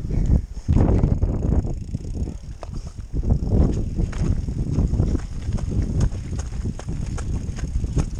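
Mountain bike riding over a rocky gravel trail: tyres crunching over loose stones and the bike rattling in quick, irregular clicks over a heavy low rumble.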